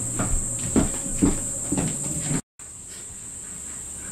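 Footsteps of a few people walking off across a room, about two steps a second, over a steady high-pitched hiss. The sound drops out completely for a moment about two and a half seconds in, then the hiss goes on more quietly.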